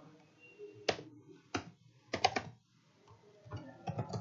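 Computer keyboard being typed on: irregular single keystrokes, then a quick run of several clicks a little after two seconds in and another run near the end.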